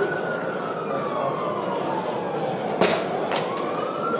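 An emergency vehicle's siren wailing, slowly falling and then rising again in pitch, over the steady hubbub of a large street crowd. Two sharp bangs come about three seconds in.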